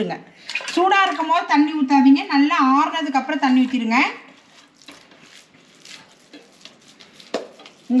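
A woman talking for about the first half, then quiet handling sounds with light clicks and one sharp knock near the end.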